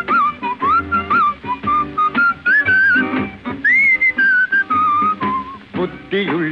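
Old Tamil film song introduction: a whistled melody, clear and gliding, over a steady rhythmic band accompaniment.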